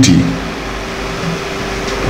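A steady background hum with a faint held tone, running evenly between two sung phrases after the voice stops just after the start.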